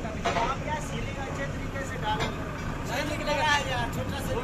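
JCB 3DX backhoe loader's diesel engine running steadily, with men's voices talking over it.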